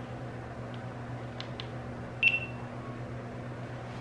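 Buttons on a GoPro Karma Grip and Hero5 camera clicking faintly a few times, then a single short high electronic beep from the camera about two seconds in, over a steady low hum.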